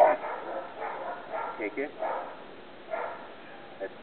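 An 8-week-old German Shepherd puppy giving a few short yips.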